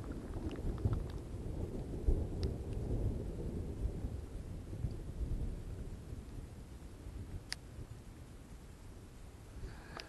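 Low rumble of thunder from a thunderstorm moving in, rolling on for several seconds and dying away toward the end.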